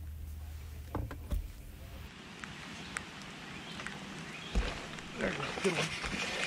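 Light rain hiss with scattered drops ticking on the camera, a single low thump about four and a half seconds in, and a faint voice near the end.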